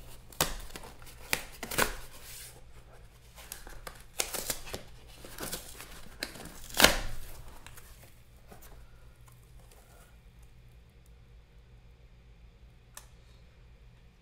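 A cardboard box being torn open by hand: a run of sharp tearing and rustling sounds as the tape and flaps give, the loudest rip about seven seconds in. After about eight seconds only faint handling sounds remain.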